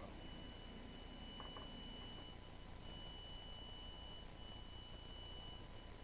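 Faint room tone: a steady high-pitched electronic whine, dropping out briefly about halfway, over a low hum.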